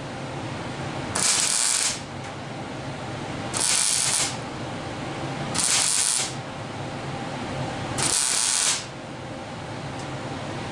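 MIG welding arc laying short tack welds on thin sheet steel: four separate bursts of crackling hiss, each under a second long, a second or two apart.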